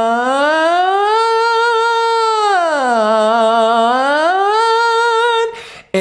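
A man's singing voice on one sustained vowel, sliding up from a low chest-voice note to a high held note, down again and back up, with no break in the line. It is a vocal exercise for carrying the voice smoothly between chest voice and head voice through the passaggio. The note stops about half a second before the end.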